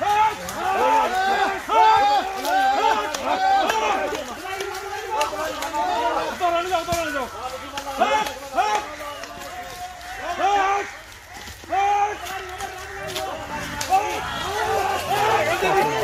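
Several men shouting and calling out over one another in loud, high-pitched raised voices, with no clear words, easing briefly near the middle.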